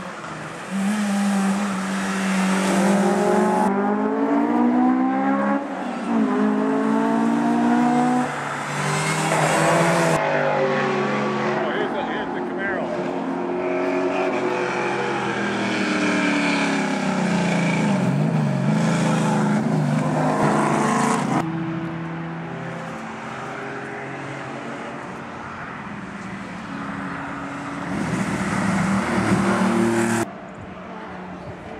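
Rally cars passing at speed, engines revving hard up through the gears with the pitch dropping at each shift, in several passes joined by abrupt cuts.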